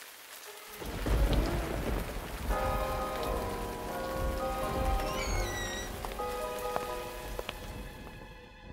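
Steady rain as sound effects, with a low rumble of thunder about a second in, and held musical notes coming in under the rain from about two and a half seconds.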